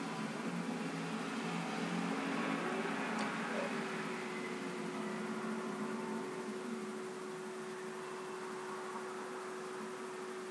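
Steady hiss of room and microphone noise. A faint steady hum sets in about three and a half seconds in.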